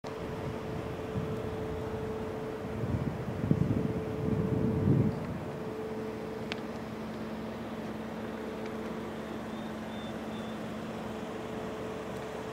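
Steady outdoor hum of a vehicle or machinery with a held low tone. A louder rumble swells for about two seconds starting around three seconds in. A single sharp click comes about midway.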